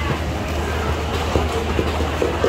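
Wooden pestle pounding in a clay mortar while green papaya salad (som tum) is made, a run of quick knocks at about three a second from about halfway through.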